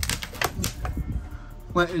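A quick run of light clicks and rattles in the first second, then quieter.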